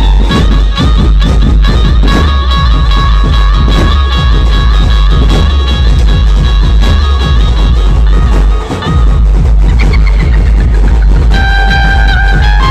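Loud dhumal band music blasting from a large speaker stack: heavy bass and drum beats under a long held melody line. The melody drops out briefly about ten seconds in.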